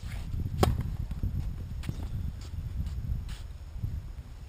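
Tennis serve: the racket strikes the ball with a sharp crack about half a second in, followed by several fainter knocks of the ball bouncing and being struck as the point goes on, over a steady low rumble.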